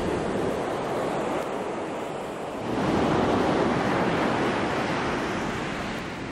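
Surf breaking and washing up a sandy beach, with a bigger wave swelling louder about halfway through.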